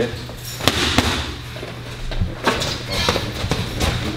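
Boxing gloves striking a trainer's focus mitts in quick combinations: a series of sharp smacks in small groups.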